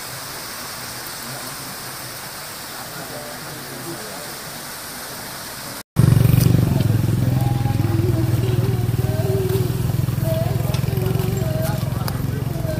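Water from a small waterfall splashing steadily into a river. About six seconds in, a cut brings a much louder low rumble with the chatter of a crowd of people.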